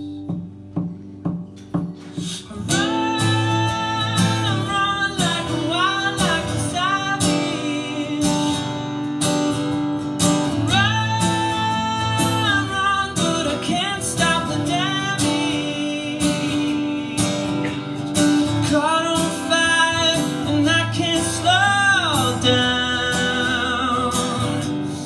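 Live solo acoustic guitar strummed in a steady rhythm, with a man singing long held, sliding notes over it. The first couple of seconds are guitar alone and quieter; the voice comes in about three seconds in.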